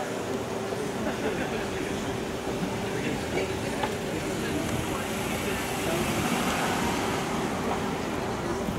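A car driving past on the street, its tyre and engine noise building to its loudest about six seconds in, over the murmur of people's voices.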